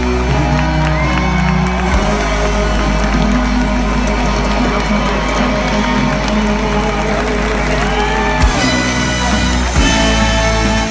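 Live band playing a held section of a rock-pop song with a steady bass, while the concert audience cheers and whoops over it.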